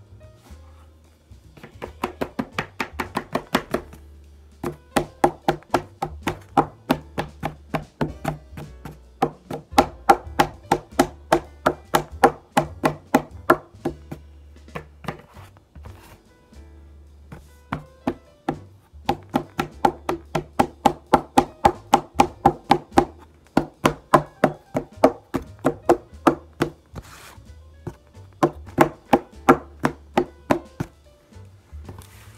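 Rapid, evenly paced tapping, about four knocks a second, in runs of several seconds with short breaks: a paint-loaded brush being tapped to flick splatters of paint onto a canvas.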